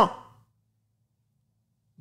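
A man's voice trails off in the first moment, then dead silence.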